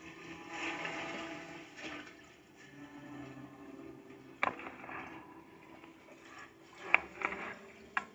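A television's speakers playing a drama's soundtrack, picked up across the room: a quiet bed of sustained music under a rushing noise, with two sharp knocks about four and a half and seven seconds in.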